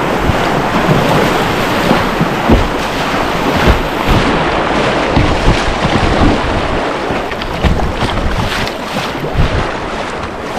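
River water rushing and splashing around a whitewater kayak running a riffle, with paddle strokes and irregular low thumps of water slapping against the hull. Wind noise on the microphone.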